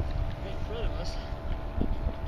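Wind buffeting the microphone and choppy water lapping at a kayak's hull, with a faint steady hum and distant voices.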